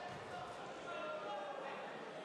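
Sports-hall ambience during a judo bout: indistinct voices carrying across a large hall, with a few dull thuds.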